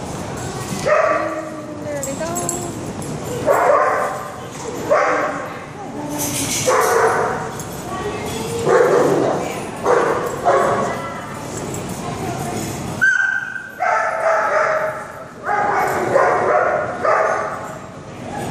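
Dogs barking and yipping in play, in short bursts every second or so.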